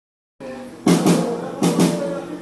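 Live band on stage: two loud hits on the drum kit with cymbal crashes, about three-quarters of a second apart, each ringing on over a held low note.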